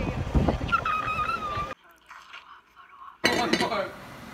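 Rumble and wind noise of a golf cart ride with a voice over it. After a quiet gap, from about three seconds in, a glass lid clinks against a glass bowl of spaghetti.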